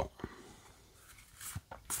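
Plastic game cards sliding and rubbing against each other as a deck is fanned out in the hands, faint and scratchy, mostly in the second half.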